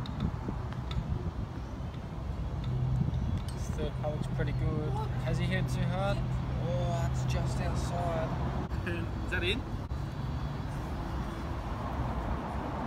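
Indistinct voices talking in the background over a steady low engine hum that sets in about three seconds in and stops near nine seconds.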